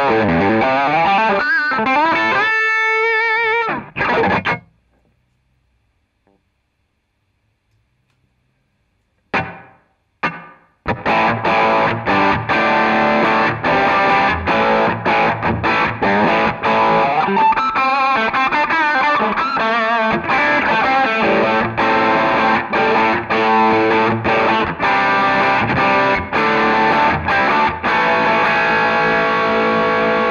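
Electric guitar played with high-gain distortion through a Zoom G5n multi-effects processor's Marshall-type amp model, with phaser and analog delay in the chain, heard through an Orange 2x12 guitar cabinet. The playing stops about four seconds in, and after a few seconds of silence come two short stabbed chords. Then continuous distorted riffing runs on to the end.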